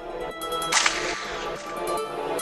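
UK drill instrumental beat with its melody running. About three quarters of a second in, a single sharp crack-like noise effect hits and fades away over about half a second.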